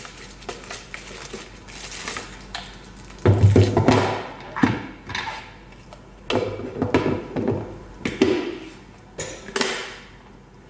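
Plastic food storage containers and their snap-on lids handled on a wooden table: irregular knocks and thuds of plastic on plastic and on wood, the loudest about three seconds in, with rustling of clear plastic wrapping.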